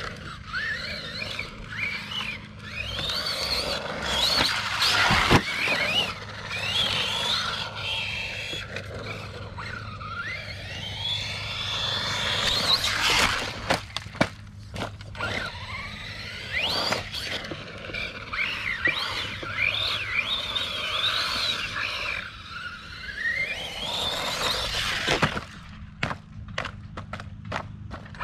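Whine of small brushless electric motors, pitch rising and falling quickly over and over as the throttle is worked, over a steady low hum, with a few sharp knocks along the way.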